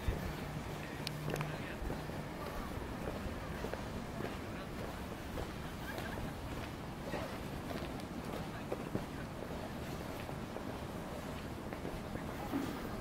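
Street ambience heard while walking, with scattered light knocks. A low steady hum sounds for the first couple of seconds.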